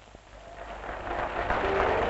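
Audience applause swelling from near silence, with faint sustained notes from the jazz band beneath it.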